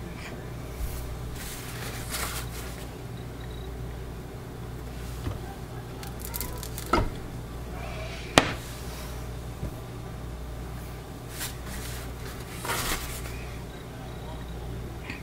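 Soap loaf and cut bars being handled on a wooden wire soap cutter: soft scraping and rubbing, with two sharp knocks about seven and eight and a half seconds in, the second the loudest, over a steady low hum.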